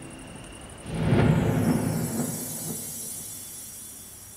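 A sudden deep rumbling boom about a second in, with a falling whoosh above it that dies away over the next two seconds: a dramatic cinematic sound effect.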